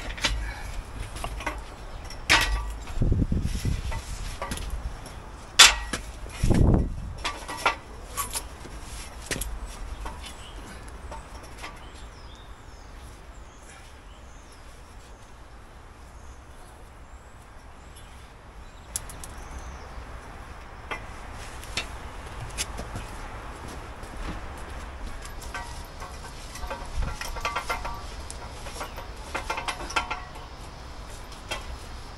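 Scattered sharp metal knocks and clanks of steel props and scaffold gear being handled and passed up an aluminium ladder, busiest in the first ten seconds, with two low rumbles in that stretch. It goes quieter in the middle, and a few more small knocks come near the end.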